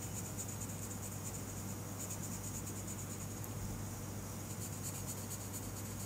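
Colored pencil scratching on paper in rapid, steady back-and-forth strokes as small areas are filled in with black, over a low steady hum.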